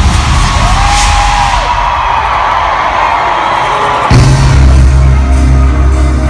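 Loud live reggaeton from the arena PA. The heavy bass beat cuts out, leaving crowd cheering over a noisy, rushing build, then crashes back in abruptly about four seconds in.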